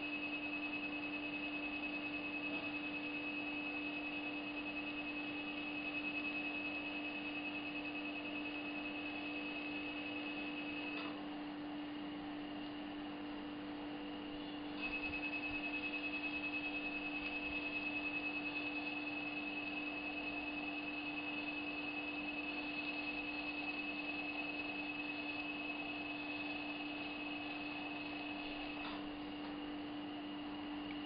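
High-pitched electronic tone from a dental surgical laser, the emission tone that sounds while the laser fires. It breaks off for about four seconds near the middle and stops again near the end, over a steady low hum.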